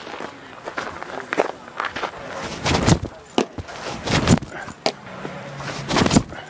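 Footsteps crunching on bullpen dirt, several separate steps with the loudest near the middle, under faint background voices.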